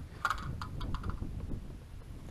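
Handling noise from a handheld camera being moved: faint rustles and light clicks over a steady low rumble.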